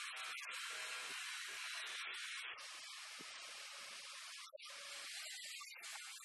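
A steady hiss that starts abruptly, with brief dips about two and a half and four and a half seconds in.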